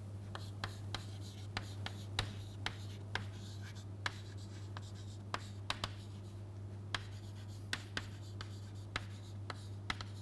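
Chalk writing on a chalkboard: irregular sharp taps and short scratches, a few each second, as the letters are formed. A steady low hum lies underneath.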